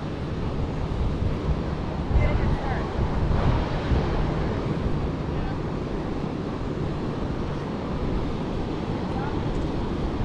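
Steady wash of ocean surf breaking on the beach, mixed with wind buffeting the microphone, at an even level throughout.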